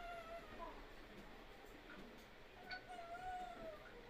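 Two faint, drawn-out high-pitched animal calls: one at the start and a longer one from a little under three seconds in.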